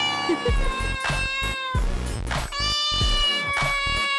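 A kitten meowing twice, each a long drawn-out call that falls slightly in pitch, over background music with a beat.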